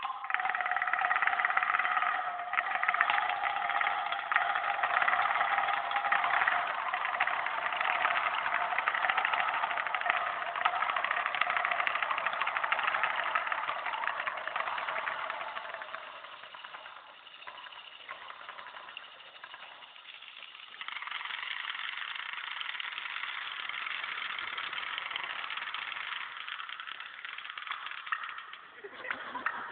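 Japanese taiko drums played by an ensemble in a fast, continuous roll, with steady ringing pitches. It drops quieter about 16 seconds in and picks up louder again about 21 seconds in.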